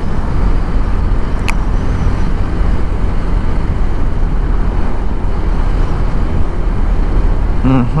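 Steady riding noise from a KTM 390 Adventure at road speed: wind rushing over the handlebar-mounted microphone, with the bike's single-cylinder engine running underneath. There is one brief sharp click about a second and a half in.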